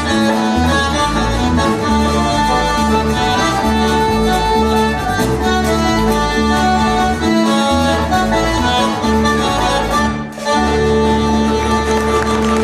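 Cajun band playing live, led by a diatonic button accordion over a banjo and steady bass notes, with a brief stop about ten seconds in before the music comes back in.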